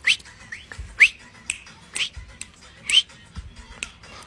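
Rhythmic hand claps, about two a second, with every second clap louder.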